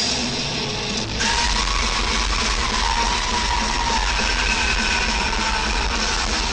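Thrash metal band playing live at full volume: heavily distorted electric guitars over drums. About a second in the sound thickens, and a long held high note rides over it for several seconds.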